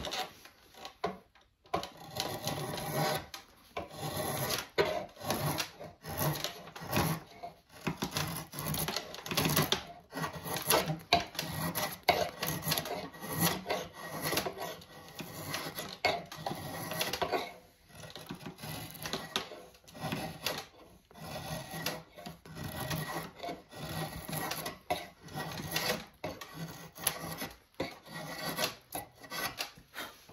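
A rasp worked by hand on an ash axe handle: repeated rough scraping strokes with short pauses, shaping the handle's top end to fit the axe eye.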